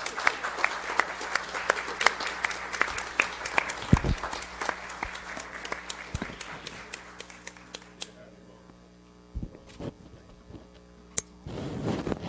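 Audience applauding, the clapping thinning out and dying away about seven or eight seconds in. A few low thumps follow, and there is a short burst of noise near the end.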